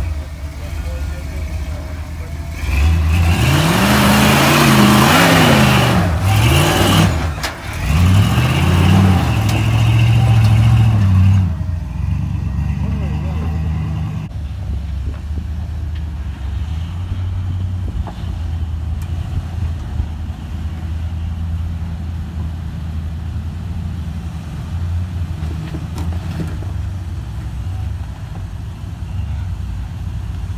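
Rock-crawler engine revving hard in repeated rises and falls for several seconds as the vehicle climbs a rock ledge, with a short break in the middle. After that, an engine runs steadily at low revs while crawling.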